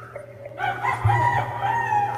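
A rooster crowing: one long call starting about half a second in, the loudest sound here.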